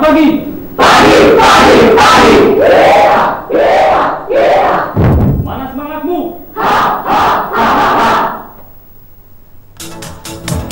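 A team of about a dozen people shouting a yel-yel team cheer in unison: a string of loud shouted phrases that stops about a second and a half before the end.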